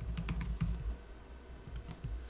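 Laptop keyboard keys being typed: a quick run of taps in the first moment, then a few scattered clicks near the end.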